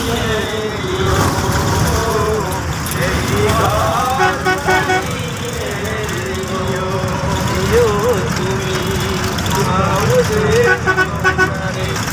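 Bus engine and road noise heard from inside the passenger cabin, a steady rumble under voices.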